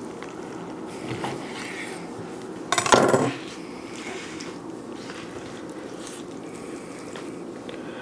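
A big knife cutting through a smoked brisket on a wooden cutting board, then a short, loud clatter about three seconds in as the knife is laid down on the countertop.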